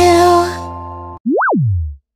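Children's song music ends on a held note that fades away. It is followed by a cartoon sound effect: a single tone that sweeps quickly up in pitch and then slides back down low.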